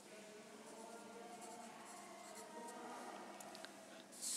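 Faint scratching of a pen writing on a paper sheet.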